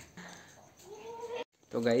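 A goat bleats once: a single call that rises in pitch and then holds, cut off suddenly about a second and a half in.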